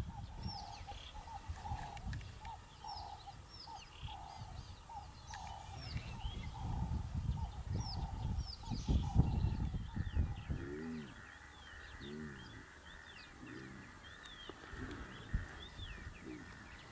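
Savanna birds chirping and calling, with one call repeated at a steady pace through the first half. Under them is a low rumble for the first ten seconds, and near two-thirds of the way through come three short, low calls that rise and fall, about a second apart.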